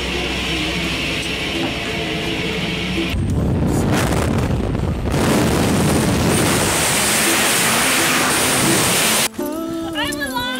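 A steady drone with music over it, then from about three seconds in a loud, even rush of wind noise at the open door of a small high-wing plane and in skydiving freefall. It grows louder about five seconds in and cuts off abruptly near the end.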